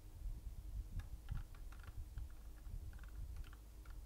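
Faint run of quick, light clicks, about a dozen from about a second in, over a low steady background hum.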